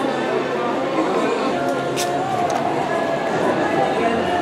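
Indistinct voices of several people talking at once, steady background chatter, with one short sharp click about halfway through.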